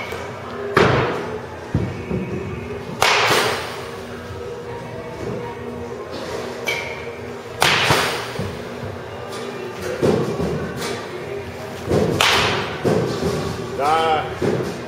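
Baseball bat swung hard through the air four times, a few seconds apart; each swing is a sudden sharp whoosh that fades over about half a second.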